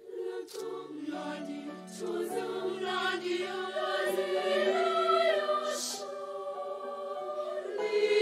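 Children's mixed choir singing in several parts, entering together at the start and swelling louder by the middle, with crisp sung consonants cutting through.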